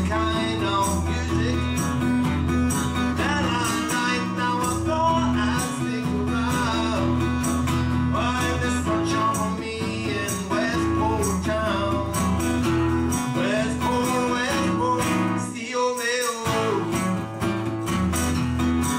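Live acoustic guitar strummed in a steady country-folk rhythm, with a voice singing over it. Near the end the guitar's low notes drop out for under a second, then the strumming resumes.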